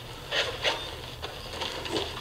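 A few soft clicks and rustles over a low steady hum: handling sounds from a TV scene of boys at their lockers.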